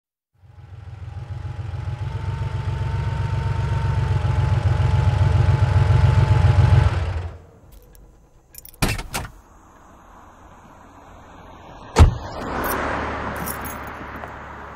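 A car engine runs and grows louder for about seven seconds, then stops abruptly. A few clicks follow, then a single sharp knock near the end.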